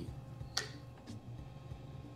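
Quiet room with a low steady hum, a short sniff at a plastic shaker cup about half a second in, and a faint tick a little after a second.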